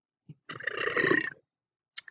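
A man's brief, rough, throaty vocal sound lasting just under a second, preceded by a small mouth click.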